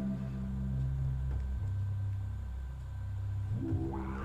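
Software synthesizer (Reason's Poltergeist) playing held low notes with its filter nearly closed, so the tone is dark and muffled. The pitch drops about one and a half seconds in, then rises near the end as the sound turns bright again while the cutoff and octave controls are turned.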